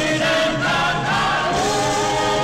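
Orchestra with a chorus singing long held notes, gliding up to a higher held note about three-quarters of the way through.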